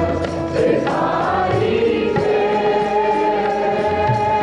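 Sikh kirtan: men singing a hymn together to harmonium accompaniment, with low tabla strokes underneath.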